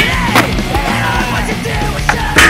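Loud rock music, with a skateboard grinding down a metal handrail under it and a couple of sharp knocks in the first half-second.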